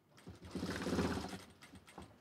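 Single-needle industrial sewing machine running in a short burst of about a second, followed by a few light clicks.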